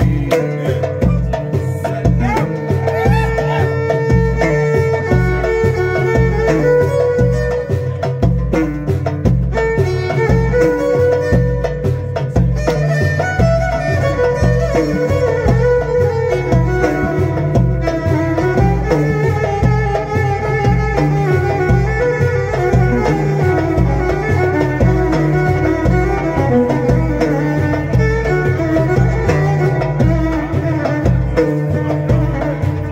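Violin playing a melodic instrumental line in Maghrebi chaabi style over a steady, driving percussion beat.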